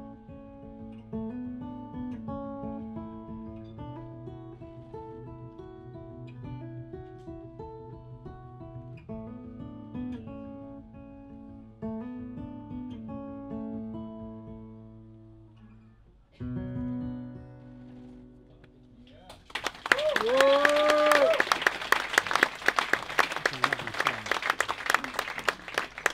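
Solo acoustic guitar playing a picked instrumental passage, ending with a final chord about sixteen seconds in that rings and fades. About twenty seconds in, louder audience applause breaks out with a whoop from the crowd as the song ends.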